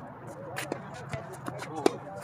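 Tennis rally on a hard court: a few sharp pops of the ball off rackets and the court, the loudest one near the end. Faint voices are heard in the background.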